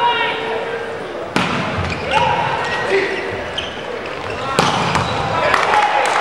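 Volleyball rally in a large hall: sharp smacks of the ball being struck, the loudest about a second and a half in and again about four and a half seconds in, with voices calling throughout.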